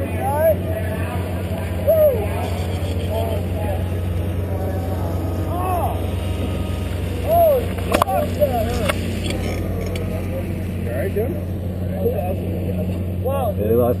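ATV engine running steadily at racing speed, picked up by the rider's helmet camera, with short shouts from voices over it and a sharp click about eight seconds in.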